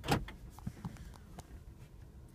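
A sharp click, then a few faint clicks over a low steady hum inside a car cabin.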